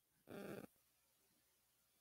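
Near silence: room tone, broken by one faint, short sound about a third of a second in.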